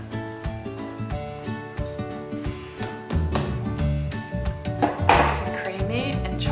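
Background music with steady held notes; a deeper bass part comes in about halfway through, and a short burst of noise is heard about five seconds in.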